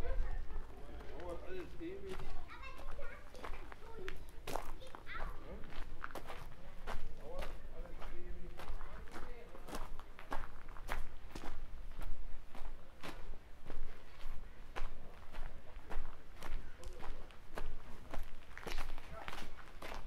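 Footsteps of a person walking on a gravel and cobbled street, steady and regular, with voices in the first few seconds.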